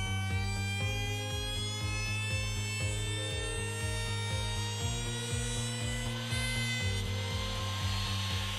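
Bosch GKF 600 trim router running with a steady high whine as its profile bit cuts along a wooden board edge, with a hiss of cutting that grows near the end. Background music with a steady beat plays underneath.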